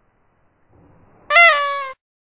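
A single loud meow, high-pitched and falling slightly in pitch, lasting about two-thirds of a second and cut off abruptly near the end. Faint rustling just before it.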